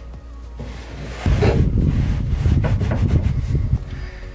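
Rubbing and scraping handling noise, starting about a second in and lasting nearly three seconds, heaviest in the low range.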